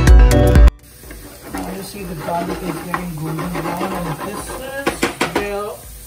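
Background music that cuts off abruptly under a second in, followed by sliced garlic sizzling faintly in olive oil in a frying pan, under a man's low, wavering voice. A couple of sharp clicks come about five seconds in.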